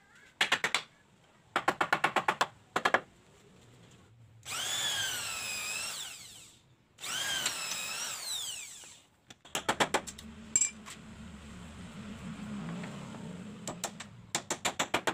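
Corded electric drill boring into the wooden frame of a table, its motor whine rising and falling in two runs of about two seconds each. Before and after the drilling come short bursts of quick sharp clicks or taps.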